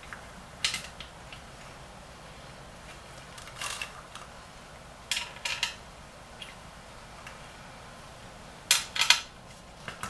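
Short metallic clinks and rattles of a socket and bolts being worked on a steel engine oil pan, in four brief bursts with the loudest cluster near the end.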